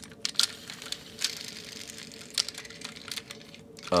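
Handling noise from a plastic and die-cast toy truck being moved and turned in the hands: scattered small clicks and taps, with a short rustle in the middle, over a faint steady hum.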